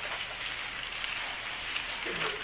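Soft, continuous rustling patter of many Bible pages being turned at once by an audience looking up a passage.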